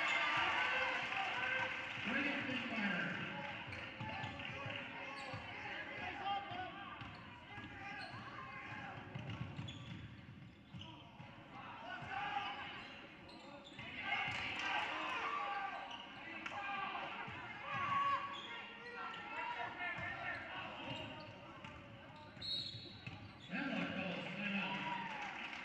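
Basketball game audio in a gym: a ball bouncing on the hardwood court amid the voices of players, coaches and spectators.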